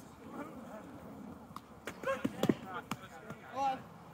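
Foam-padded boffer weapons striking shields and bodies in a melee: a handful of sharp hits between about one and a half and three seconds in, the loudest near two and a half seconds, with distant players' shouts.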